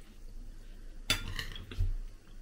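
Metal fork and spoon clinking against ceramic bowls as food is eaten: a sharp clink about a second in, a few lighter clinks, and a dull knock near the end.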